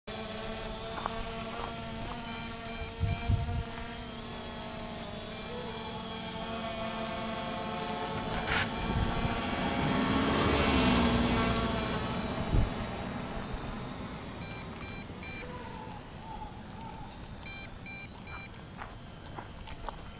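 MJX Bugs 2C quadcopter drone flying overhead, its brushless motors and propellers giving a steady whining buzz. The sound grows louder around the middle as the drone passes close, then fades toward the end.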